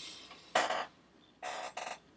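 A man's short breathy sounds: one puff of breath about half a second in, then two more close together near the end.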